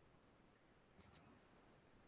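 Near silence, with two faint computer-mouse clicks about a second in, a fraction of a second apart.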